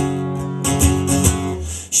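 Nylon-string acoustic guitar strummed: a chord struck at the start rings on, then a few quick strums come near the middle.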